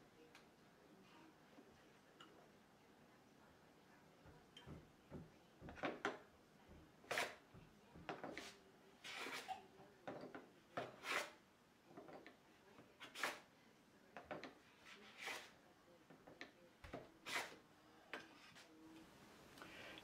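Hand plane shooting the 45-degree mitre edge of a wooden panel on a shooting board, each stroke a short scraping cut that takes a shaving and cleans table-saw marks off the bevel. Quiet for the first few seconds, then a run of strokes about once a second.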